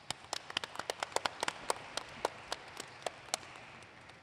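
Audience applauding: a dense patter of clapping with a number of close, sharp single hand claps standing out, the sharp claps thinning out after about three seconds.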